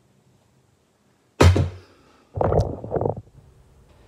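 Kitchenware being handled on a countertop: a single sharp knock about a second and a half in, then a rougher cluster of clattering knocks a second later.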